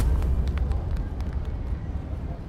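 A low steady rumble of street ambience with a few faint clicks, fading toward the end.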